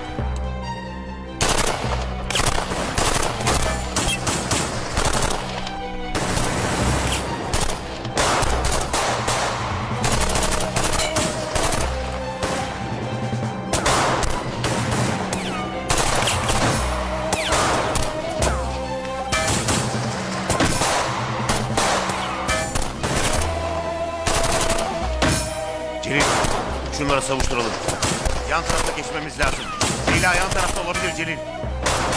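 Gunfight with rapid bursts of automatic gunfire and single shots throughout, over a dramatic music score with low held notes.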